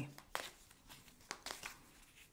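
An oracle card deck being shuffled by hand: a few faint, short clicks and rustles of cards against each other.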